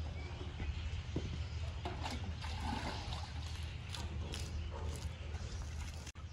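Water splashing and trickling as a cow's hindquarters are washed down with lukewarm water from a jug, with a few short knocks of handling, over a steady low hum.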